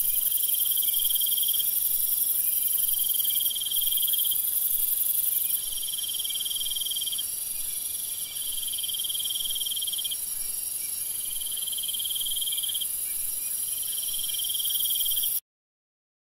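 Insects chirping in a steady night chorus: a constant high-pitched shrill with a lower trill that comes in spells of a second or two separated by short gaps. It cuts off suddenly just before the end.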